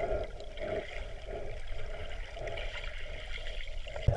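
Underwater ambience picked up by a submerged camera: a steady, muffled rush and low rumble of moving seawater, with faint gurgling.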